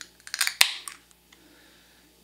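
Aluminium beer can being cracked open by its pull tab: a few light clicks, then one sharp crack just over half a second in, followed by quiet.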